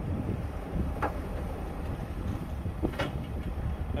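Wind buffeting the microphone over the steady running of a telehandler's engine, with two brief sharp sounds, one about a second in and one near three seconds.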